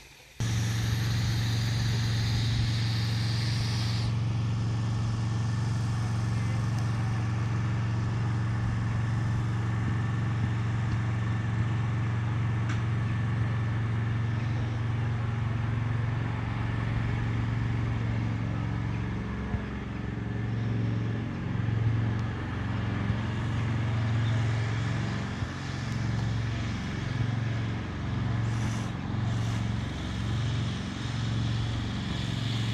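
A vehicle engine running steadily close by, a low even hum that starts suddenly just after the start and begins to waver and pulse in the second half.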